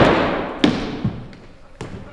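A single stage gunshot ringing out in a large hall and fading over about a second, followed by two lighter knocks.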